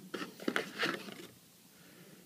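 A few soft rustles and clicks of packaging and a wrist strap being handled, in the first second or so, then quiet room tone.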